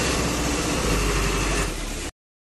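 Bus engine running steadily, heard from inside the cabin.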